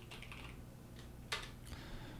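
Faint keystrokes on a computer keyboard, typing a search term, with one sharper click about a second and a third in.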